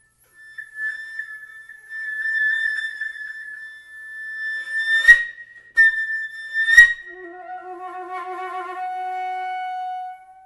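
Solo flute in a piece modelled on Japanese shakuhachi music: a long high note with a wavering pitch swells in loudness, is broken by two sharp, loud accented attacks about two seconds apart, then drops to a lower, fuller note with vibrato.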